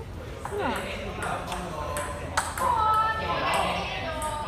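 Several people talking and exclaiming in a large room, with a few short, high-pitched pings scattered over the voices.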